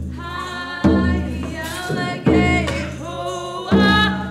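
A group singing a traditional Haida song together, marked by slow, even drum beats about one every second and a half.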